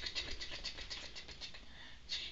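A pet ferret playing with a person's hand on a bed: a quick run of soft clicks and scratches, about ten a second, fading toward the end.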